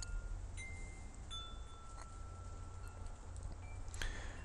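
Faint chime notes: a few single ringing tones at different pitches, one held for about two and a half seconds, over a low steady hum.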